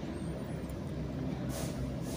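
Steady low background rumble with a faint hiss, and a soft swell of hiss about one and a half seconds in.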